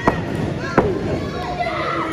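Two sharp thuds on the wrestling ring, about three-quarters of a second apart, under scattered shouting from the crowd around it.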